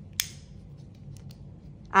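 A single sharp click of small magnets snapping together at a 3D-printed model atom ball as their poles are tested, followed by a few faint handling ticks.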